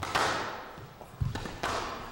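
Squash ball being struck and slamming off the court walls during a rally: a sharp hit at the start, then a quick cluster of hits a little over a second in, each echoing in the hall.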